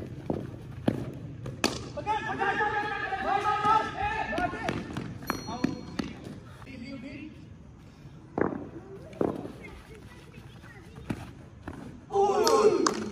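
Men's voices calling out across a tape-ball cricket game, with several sharp knocks and thuds scattered among them, two of the loudest in the second half.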